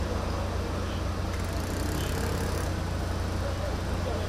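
Steady low rumble of running engines with a hiss of noise over it, and faint voices in the background.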